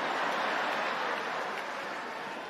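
Live comedy audience reacting to a punchline, a dense wash of crowd laughter and applause that slowly fades.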